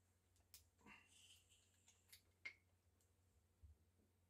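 Near silence with a few faint clicks and ticks from handling small plastic flavour bottles and opening a dropper cap, the sharpest about two and a half seconds in, and a soft low knock near the end.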